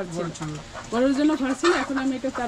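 Chickens calling in the pen, low crooning and clucking, with a person's voice mixed in.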